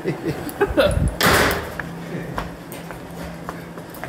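Claw hammer knocking and prying at the sheet-metal rocker panel of a 2003 Pontiac Vibe: a few sharp metallic knocks, then a louder scraping pry a little over a second in, followed by quieter scattered clicks.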